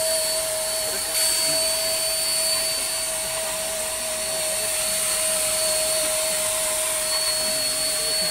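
Handheld electric disinfectant sprayer running steadily, its motor blowing sanitiser mist out through a hose to disinfect a vehicle: a steady whine over a rushing hiss.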